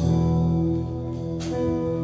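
Church band playing an instrumental passage: held keyboard chords, with a low bass note coming in right at the start.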